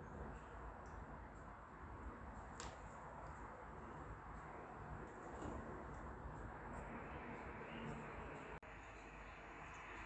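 Quiet room tone: a faint steady hiss and low hum with a few soft small clicks.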